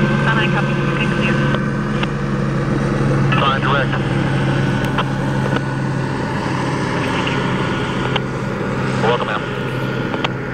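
A steady engine drone with a low hum that eases off a little past the middle, and a few brief, faint fragments of speech over it.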